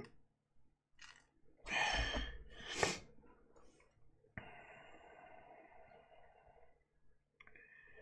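A man's long sigh, a loud breathy exhale about two seconds in. A fainter steady hiss follows for a couple of seconds.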